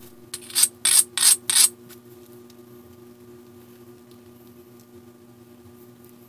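An abrader rubbed in about five quick strokes across the edge of a piece of Keokuk chert, a harsh scraping that grinds the edge down. After the strokes only a low steady hum remains.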